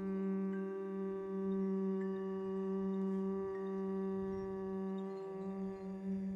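Crystal singing bowls ringing with steady, sustained tones, blended with a low, steady hum of voices at about 200 Hz. The hum is the humming exhale of a breathing meditation.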